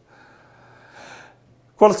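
A man's faint in-breath in a pause in his talk, over a low steady hum, before his speech resumes near the end.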